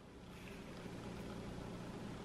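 Faint, steady room tone with a low hum, in a lull between speech.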